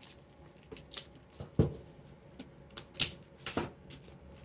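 Hands unwrapping and handling a metal Blu-ray steelbook case: scattered light clicks, taps and plastic crinkles. The loudest tap comes about one and a half seconds in.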